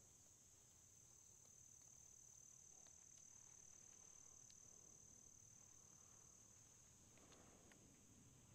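Near silence in the woods, with faint, steady high-pitched insect chirring throughout and a few faint ticks.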